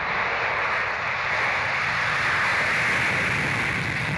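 Jet engines of a Tu-22M3 long-range bomber at takeoff power during its takeoff run: a steady, even noise with no rise or fall.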